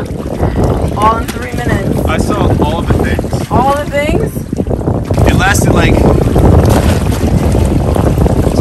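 Wind buffeting the microphone over the sea, a steady rumble, with a few short sliding vocal sounds in between.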